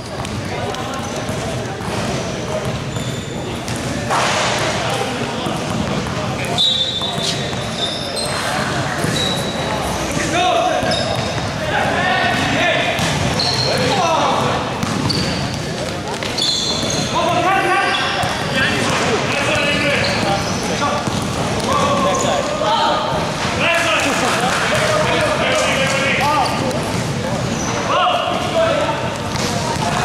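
A basketball bouncing on an indoor court floor during play, with short high squeaks and players' shouts echoing through a large hall.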